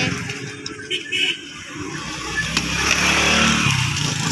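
A motor vehicle's engine running past on the road, growing louder in the second half, over some background voices.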